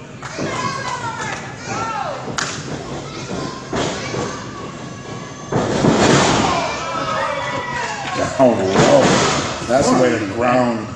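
Several dull thuds of pro wrestlers' kicks and strikes landing and bodies hitting the ring canvas, the loudest a little past halfway. Crowd voices, with children among them, shout between the hits.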